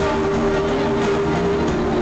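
Loud live pop-rock music from a stadium PA, recorded from inside the crowd, with steady held notes over a dense, distorted wash of sound.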